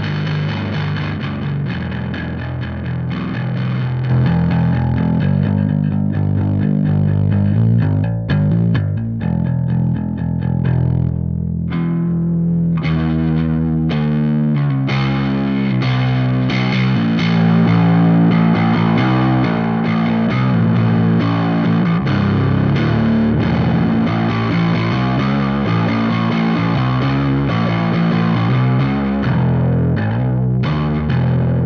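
Electric bass played through a WMD Goldilocks Planet preamp/distortion pedal: a distorted bass riff whose tone shifts as the pedal's knobs are turned. The playing gets louder about four seconds in, thins out briefly around twelve seconds, then turns dense again.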